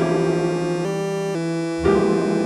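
Logic Pro's Alchemy synth playing additive-resynthesized piano chords over a sequenced synth bass line built from the 'Noisy Hum' sound. The held notes change pitch several times, and the bass notes are not perfectly in tune.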